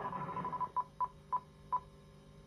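Electronic beep tone from a television: a steady tone that cuts off about two-thirds of a second in, followed by four short beeps at the same pitch, unevenly spaced.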